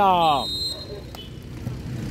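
A voice calling out a drawn-out word that falls in pitch over the first half second, then low outdoor background noise.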